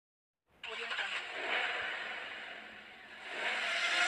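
Car sound effect: a noisy rush that swells about a second in and fades, then swells again, louder, near the end.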